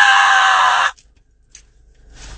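A man's loud, held high-pitched shout on one steady note, cut off abruptly about a second in, then quiet.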